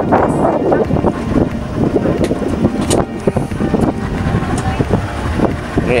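A boat at sea: a motor running under wind buffeting the microphone, with people's voices in the background.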